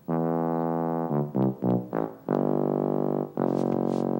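A tuba playing low notes: one held note, a few short notes, then two longer held notes.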